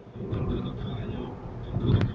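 Low road and engine rumble of a moving car, heard from inside the cabin. It swells to a louder low rumble near the end.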